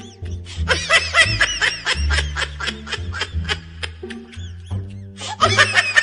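Rapid, high-pitched giggling laughter over background music. The laughter thins out about four seconds in and breaks out again near the end.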